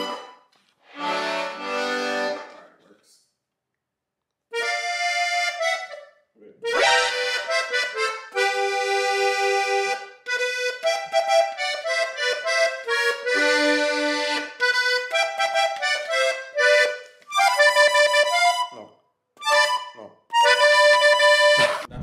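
Diatonic button accordion playing a melody, one steady note stack after another, in several short phrases broken by brief pauses.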